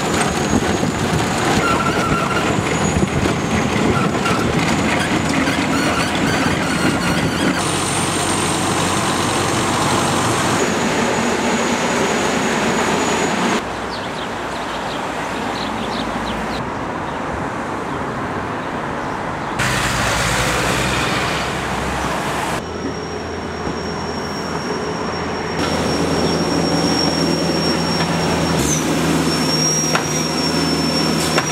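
Road-works machinery: skid-steer loaders running, with a milling attachment grinding up old asphalt. The sound changes abruptly every few seconds, with a quieter stretch in the middle.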